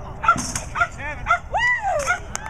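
Small dog barking in a run of short, high barks about every half second, ending in one longer rising-and-falling yelp near the end.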